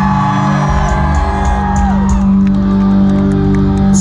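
Live pop-punk band playing loud with amplified guitars and a heavy low end, heard from inside the crowd, with held and sliding notes over it and some crowd whoops.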